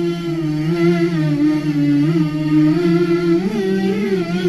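Slow outro music: long held notes that glide gently up and down in pitch.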